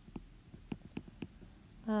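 Stylus tip tapping and sliding on a tablet's glass screen while handwriting: several light, separate clicks.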